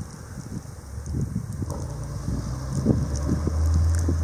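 A vehicle's engine running as it drives along a snowy street, a low hum that grows steadily louder as it approaches and peaks near the end. Gusty wind buffets the microphone throughout.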